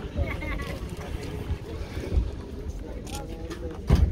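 Wind rumbling on the microphone over the background chatter of people, with one sharp knock near the end.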